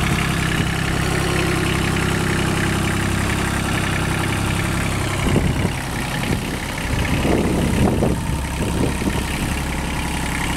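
Kubota 1600 mini tractor's diesel engine running at a steady idle, turning uneven about halfway through as the tractor is driven up the loading ramps onto a flatbed truck.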